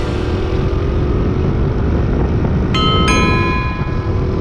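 Small single-cylinder engine of a Honda Gorilla moped running under way, its pitch rising slowly, mixed with steady wind and road rumble. Near the end, two bell-like chime tones ring out.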